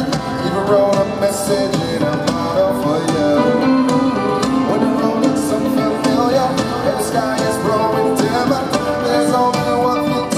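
Live pop ballad played by a full band, with male voices singing over electric guitar and drums, loud and steady throughout.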